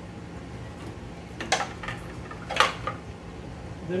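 Two short metallic clicks, about a second apart near the middle, from cables and connectors being handled against the sheet-metal chassis of a Dell PowerEdge T310 server, over a steady low hum.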